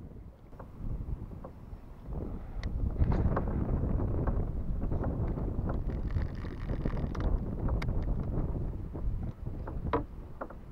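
Wind buffeting the microphone in a kayak on choppy water, a low rumble that grows louder a couple of seconds in, with small water slaps against the kayak hull.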